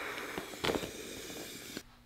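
Breath blown into the valve of a LuminAID inflatable solar lantern to blow it up, a steady airy hiss with one soft knock partway through; the hiss stops shortly before the end.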